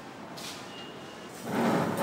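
A red plastic chair pulled out from a table, scraping briefly across the floor near the end.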